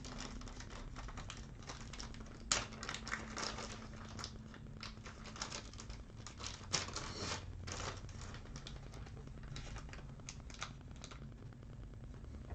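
Faint, scattered clicks and rustles of trading cards and plastic card holders being handled on a tabletop, the sharpest click about two and a half seconds in.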